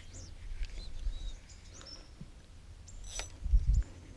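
Faint bird calls over quiet open-air ambience, then a sharp click about three seconds in followed by a few low thumps.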